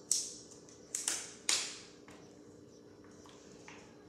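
Something being handled at a table: three sharp clicks or pops within the first second and a half, each trailing off in a short hiss, then two fainter ones later on.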